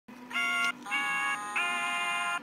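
Sing-a-ma-jigs plush toys singing in their electronic voice: three short held notes in a row with brief gaps between them.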